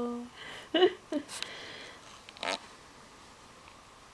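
Brief vocal sounds close to the microphone: a hummed note trailing off just after the start, then a few short breathy noises and one last short sound about two and a half seconds in.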